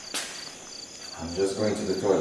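Crickets chirping steadily in an even rhythm of about three chirps a second, with a voice speaking briefly in the second half.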